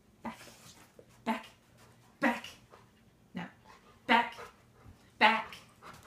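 A dog barking, about six single barks roughly one a second, the loudest near the end.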